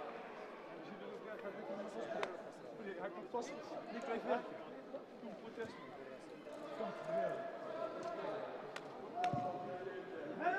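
Indistinct voices of several people talking in a large hall, with a few scattered sharp knocks and clicks.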